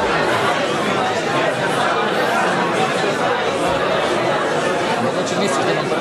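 Babble of many overlapping conversations: a room full of people talking in pairs at the same time, with no single voice standing out.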